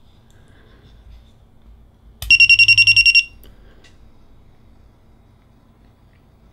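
Nebula 4000 Lite 3-axis gimbal beeping as it powers on: a rapid run of about a dozen high electronic beeps lasting about a second, a couple of seconds in.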